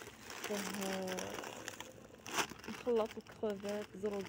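Thin plastic food packaging crinkling as bags of frozen rice are handled, with a sharp rustle about halfway. A woman's voice speaks in short bursts.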